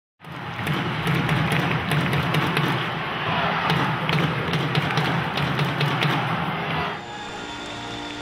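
Intro music stinger with a heavy pulsing low beat and crackly hits, cutting off sharply about seven seconds in and giving way to a quieter, steady background.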